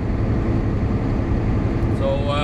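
Steady in-cab drone of a Volvo 780 semi-truck cruising at highway speed: the Cummins ISX diesel engine running under an even wash of road and tyre noise.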